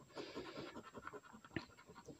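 A coin scratching the coating off a scratch-off lottery ticket: faint, quick, short scraping strokes, with one sharper tick about one and a half seconds in.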